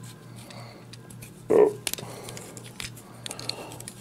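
Faint clicks and scrapes of a small pointed tool prying a plastic toy truck wheel off its axle, over a steady low hum.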